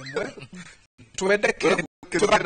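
Men talking in a studio panel discussion, with a short rising vocal exclamation right at the start.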